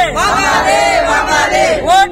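A group of young men chanting a slogan in unison, loud and shouted, as one drawn-out call that ends near the end and is followed straight away by the next.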